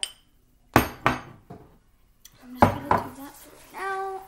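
A spoon knocking sharply against an ice cream tub or bowl while ice cream is scooped and served: a light click, then two pairs of loud knocks.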